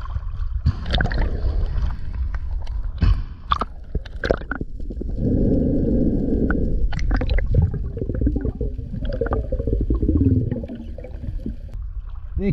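Sea water sloshing and gurgling around a camera going under the surface and back up, with a dense muffled underwater rush about five seconds in. Scattered sharp knocks run through it.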